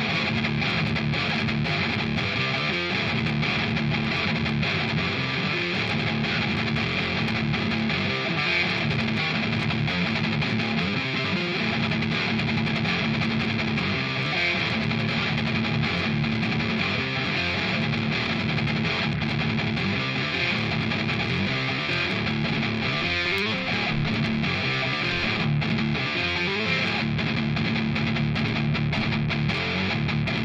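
Explorer-style solid-body electric guitar played solo with fast, continuous picking, holding a steady level throughout.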